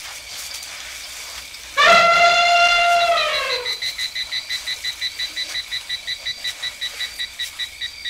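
An elephant's trumpet call starts about two seconds in. It is loud and held for about a second and a half before it slides down in pitch and fades. Under and after it comes a steady high insect chirping, about five pulses a second.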